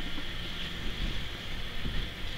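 Faint handling noise from cotton shirts being shifted about and the handheld camera being moved: a low rumble and soft rustling over a steady faint hiss.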